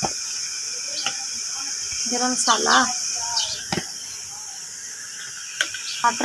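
A person's voice speaks briefly about two seconds in. A steady high hiss runs underneath, broken by a few light clicks.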